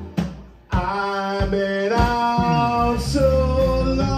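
Live blues band in a stop-time break: the band cuts out right at the start, leaving one hit ringing away for about half a second, then comes back in with a male voice singing over electric guitar, bass, drums and an organ sound from a Roland VK-7 keyboard.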